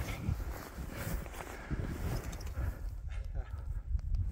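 Footsteps trudging through deep fresh snow: irregular crunching thuds, with clothing rubbing close to the microphone.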